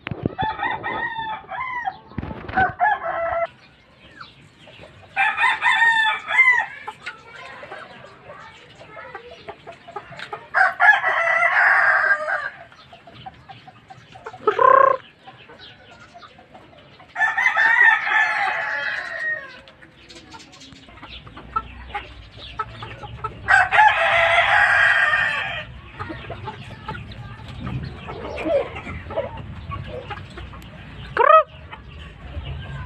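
Gamecock roosters crowing: about five long crows, each about two seconds long, several seconds apart, with clucking between.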